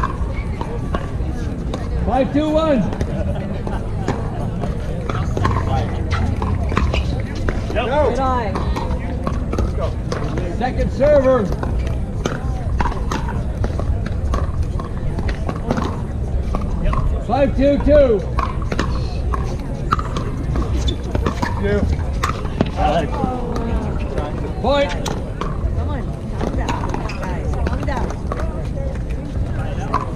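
Pickleball court ambience: sharp pops of paddles striking plastic balls, scattered among indistinct voices, over a steady low rumble.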